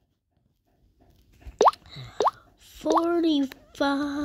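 Two quick rising 'bloop' pops about half a second apart, then a high-pitched voice starts a held, slightly wavering vocal sound near the end.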